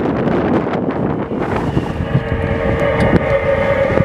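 Wind buffeting the microphone high up on a fire-brigade aerial lift. About one and a half seconds in, a steady mechanical whine joins it: the lift's drive moving the platform.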